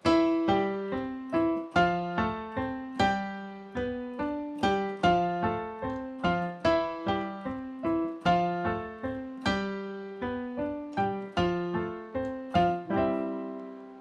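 Digital stage piano playing a cha-cha-chá piano tumbao with both hands together: a repeating, syncopated pattern of struck chords and octaves moving through C, F and G major.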